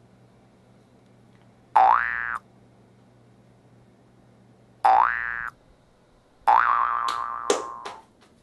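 Three comic boing-style sound effects, each a short pitched tone that slides quickly upward. The third holds its pitch longer and is followed by a few quick clicks near the end.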